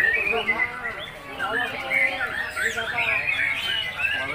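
Many caged songbirds singing at once: a dense tangle of quick rising and falling whistles and chirps, over a murmur of crowd voices.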